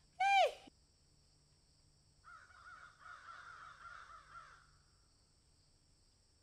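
Animal calls: one short, loud call that drops in pitch, then about two seconds later a softer, wavering, chattering call lasting about two seconds.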